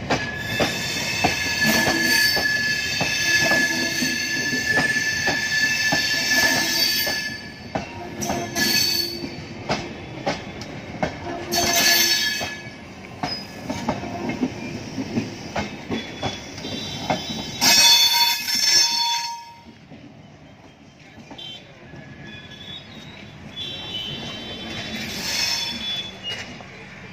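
LHB passenger coaches of an express train rolling slowly into a station, the wheels squealing on the rails with a steady high squeal for the first seven seconds, over a run of wheel clicks on the rail joints. Louder sharp bursts come at about twelve and eighteen seconds, then the sound drops away as the last coach passes.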